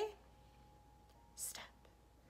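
A quiet pause with one short whispered breath from a woman's voice about one and a half seconds in.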